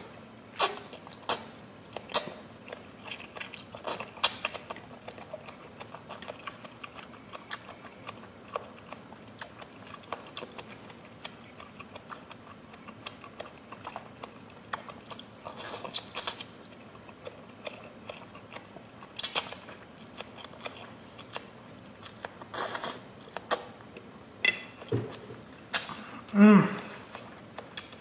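Close-miked chewing of a mouthful of lo mein noodles and vegetables: irregular wet mouth clicks and smacks, with a few louder clusters as more noodles are taken in.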